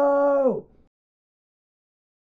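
A long, drawn-out shouted "No" held on one pitch, which drops steeply about half a second in and cuts off abruptly. Total silence follows.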